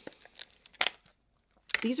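A small false-eyelash box being handled and opened: a few short crinkling clicks, the sharpest a little under a second in.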